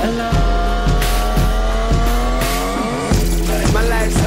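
Hip-hop backing track with a steady beat and no vocals. A long pitched sweep slowly slides downward over the first three seconds, then the melody changes.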